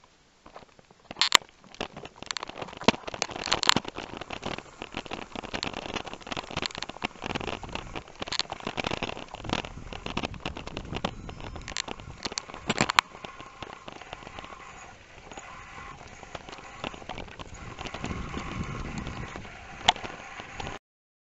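Bicycle rolling downhill over a rough, patched lane, rattling and knocking sharply over the bumps for the first dozen seconds or so, then settling into a smoother rushing noise with wind on the microphone near the end.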